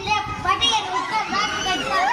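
Children's voices: several children talking and calling out over one another, some holding their pitch toward the end.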